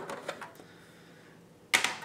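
White plastic sprouting-tray parts being handled: a few light clicks, a quiet stretch, then a sharp plastic clatter near the end.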